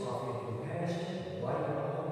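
A man's voice chanting in long, held notes on fairly steady pitches.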